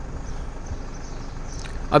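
Steady outdoor background noise with a low rumble, with no distinct event in it; a man's voice starts right at the end.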